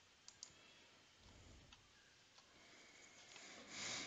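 Computer mouse clicked: two sharp quick clicks about a third of a second in, a couple of fainter ticks after, otherwise near silence. A soft swell of noise rises just before the end.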